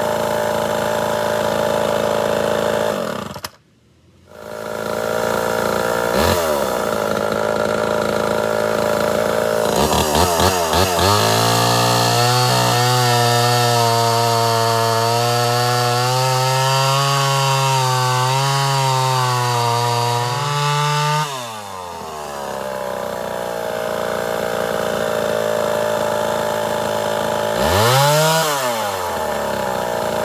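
Homelite Super XL Auto two-stroke chainsaw idling, then revved up and cutting into a log at full throttle for about ten seconds, its pitch wavering under load, before dropping back to idle. There is a quick throttle blip near the end, and a brief break in the sound a few seconds in. The owner judges the saw to be running lean: its carburetor's high-speed circuit is not delivering enough fuel.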